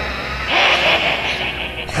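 Animated-show soundtrack: a low, steady musical drone with a hissing sound effect that swells in about half a second in and fades just before the end.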